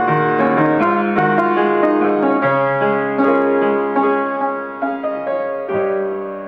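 Upright piano played solo, both hands, in a pop-song arrangement. The notes come thick and full at first, then thin out into fewer held chords that grow steadily softer in the second half.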